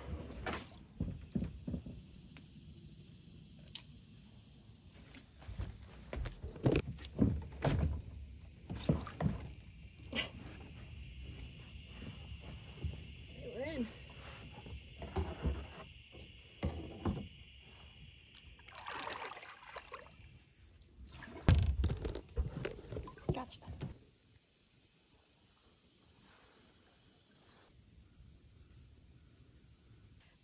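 Sit-in kayak being launched off a wooden landing and paddled away: irregular knocks and thumps of the hull and paddle against the boards and boat, with paddle strokes in the water. A steady high buzz joins through the middle stretch, and the last few seconds are much quieter.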